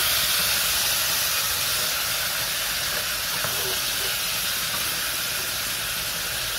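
Vegetables frying in a stainless-steel pan, a steady hissing sizzle, with a wooden spoon stirring through them.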